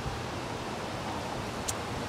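Steady, even background hiss of outdoor ambience with no distinct source, and one brief high click near the end.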